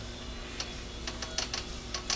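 Metal lathe running with a faint steady hum, and a scatter of light ticks as the chamfering tool is fed in toward the spinning mild-steel workpiece.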